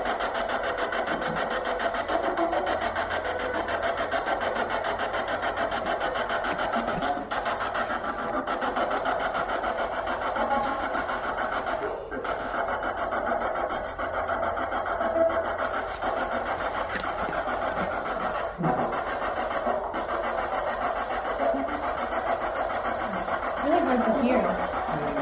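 Ghost-hunting spirit box sweeping through radio stations, played through a small Honeytone mini amplifier: a constant, rapidly stuttering rush of radio static with brief broken scraps of voices.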